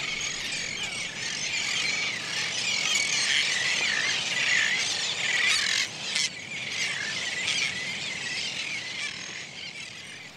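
A colony of royal terns calling: many overlapping harsh calls at once, thinning out near the end.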